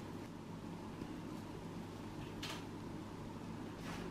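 Brief sharp clicks and scrapes of a metal podiatry instrument on a toenail, the clearest about two and a half seconds in and another near the end, over a steady low hum.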